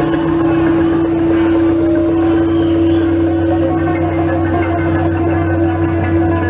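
A live rock band's amplified instruments holding a steady, unbroken drone on one low pitch with deeper held notes beneath, loud on the stage sound system.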